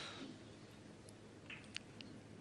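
Near silence: quiet arena room tone, with two or three faint short clicks about one and a half seconds in.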